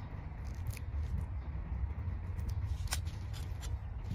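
Metal tweezers working dried leaves out of a succulent rosette: a few light, sharp clicks and scrapes, the clearest about three seconds in, over a steady low rumble.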